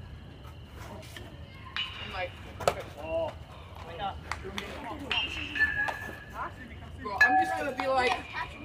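Spectators shouting and yelling, with one sharp metallic ping of an aluminium bat hitting the ball about two and a half seconds in.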